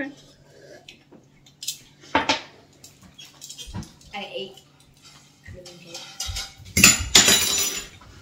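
Metal tongs and tableware clicking and clinking on plates and a wire rack. A short, harsh burst of noise about seven seconds in is the loudest sound.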